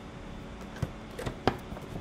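Three short, sharp clicks and knocks from the hard plastic TrekLite lock box being swung open and handled, the loudest about one and a half seconds in.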